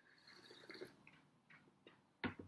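Faint sipping of tea from a small cup in the first second, followed by a couple of light taps near the end as the cup is set down.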